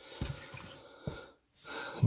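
Quiet handling of a plastic remote on a cardboard surface: two light taps, about a quarter second in and just after a second, with soft breathing near the end.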